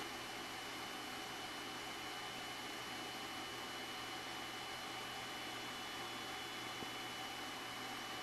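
Steady hiss of room tone with a faint, thin high whine held throughout; no machine is being run.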